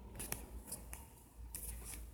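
Faint handling noise: a few short, scratchy clicks and rubs, about five in two seconds, over a low hum.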